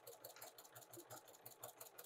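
Domestic sewing machine fitted with a walking foot, running a straight stitch at a slow, steady pace: faint, even clicks of about seven stitches a second.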